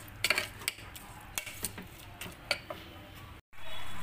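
A metal spoon stirring chicken masala in a steel pot, clinking against the pan now and then. Near the end the sound breaks off for a moment, and a steady noise follows.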